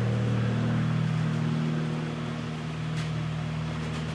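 Steady low mechanical hum made of several held tones, which shift slightly about a second in.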